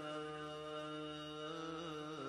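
Male naat reciter holding one long sung note into a microphone, unaccompanied, with a slight waver near the end. A low steady hum runs beneath the voice.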